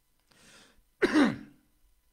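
A man clearing his throat once, a short rough sound about halfway through that drops in pitch.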